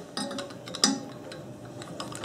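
A few light metallic clicks and clinks of a screwdriver working a screw out of a small Briggs & Stratton carburetor. The loudest click comes a little under a second in and rings briefly.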